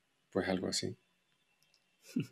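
A single short spoken 'sí', then quiet room tone.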